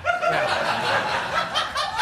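Studio audience laughing steadily after a punchline.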